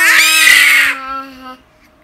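An infant's loud, high-pitched excited squeal that trails off after about a second and a half.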